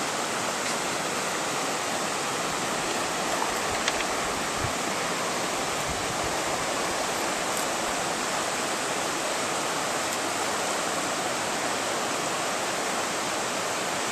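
A shallow, rocky river rushing steadily over stones.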